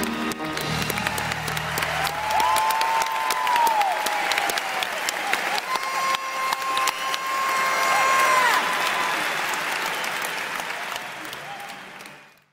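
Audience applauding with a couple of long whistles as the last chord of the music dies away about two seconds in; the applause fades out at the end.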